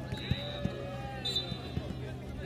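A jokgu ball thudding on the ground a few times at uneven spacing, with players' voices calling around the court.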